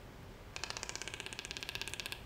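A toucan giving a fast clicking rattle, about twenty clicks a second, for about a second and a half.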